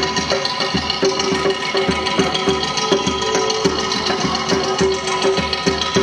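Balloons played as instruments by a group: a busy run of tapped, drum-like beats, several a second, over held pitched tones.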